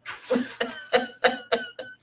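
A woman laughing in a quick run of short bursts, about four a second.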